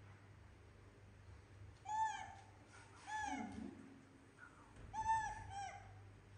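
Baby macaque giving short, high-pitched arched coo calls, each rising and falling in pitch: two about 2 and 3 seconds in, then two more close together near the end.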